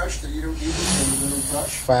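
A man's low wordless murmur under his breath, with a steady high hiss lasting about a second in the second half.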